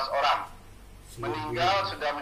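A man's voice played through a tablet's speaker, with drawn-out, nasal hesitation sounds and no clear words: a short one at the start and a longer held one in the second half.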